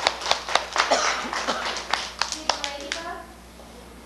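Hand clapping, several claps a second, dying away about three seconds in, with children's voices mixed in.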